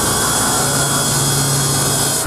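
Sliding-table panel saw with its circular blade cutting through a sheet of furniture board: a loud, steady, high-pitched whine over a low motor hum.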